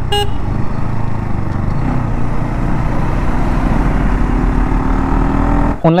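Motorcycle riding at speed on a highway, with wind noise on the microphone over the engine. A short horn toot comes at the very start, and the engine note climbs slowly in the second half.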